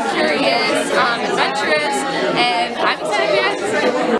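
Voices talking and chattering in a large room, speech overlapping throughout.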